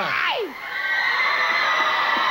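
A voice gives a sharp falling exclamation, then a studio audience cheers and shrieks in one long, high-pitched wave.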